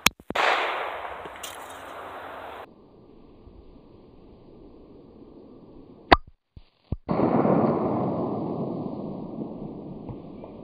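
Two .45 ACP pistol shots from a Glock 21 firing 230-grain ball ammunition, one right at the start and another about six seconds in. Each sharp crack is followed by a long noisy tail that fades over a couple of seconds.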